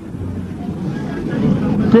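A low rumbling noise that grows louder through a pause in a man's speech, his voice resuming at the very end.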